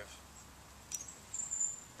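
Quiet outdoor background with a steady low hum. About a second in there is a click, then a thin, high whistle lasting most of the second half.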